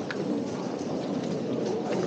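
Crowd noise: the steady hubbub of many people walking and talking along a busy pedestrian street, with scattered footsteps on cobblestones.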